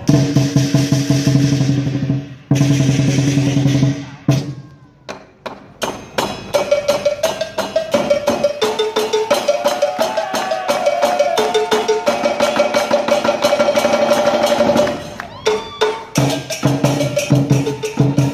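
Lion dance percussion band of drums and cymbals playing a fast, driving rhythm. It thins to a few scattered strokes around four to six seconds in, then picks up again with a held, stepping melody line over the beat until about fifteen seconds.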